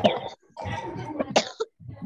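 A person's voice coming through a video-call connection in two rough, noisy bursts: a short sharp one at the start, then a longer one from about half a second in.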